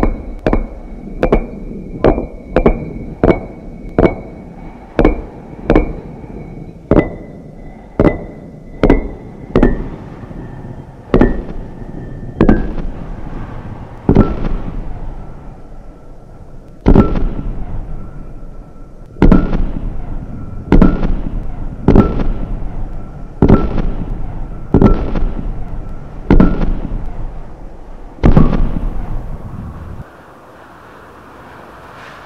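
Giant stone slabs toppling one after another like dominoes, each landing with a heavy thud. The hits come roughly every half-second to second at first, then spread out to about one and a half seconds apart. A faint high tone sounds behind them and steps lower in pitch as the chain goes on.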